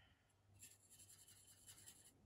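Near silence with faint, rapid light scratching from about half a second in: a watercolor brush working on paper.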